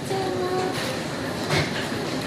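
Steady background hubbub of a busy shop, with a woman's voice holding a short drawn-out syllable early on.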